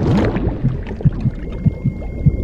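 Soundtrack sound effect: a brief swell at the start, then a low, rhythmic pulsing of about three soft thumps a second, with a gurgling, underwater quality.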